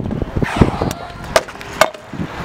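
Stunt scooter on a concrete skatepark: wheels rolling with several sharp clacks of the scooter hitting the ground, the last, near the end, leaving a short metallic ring.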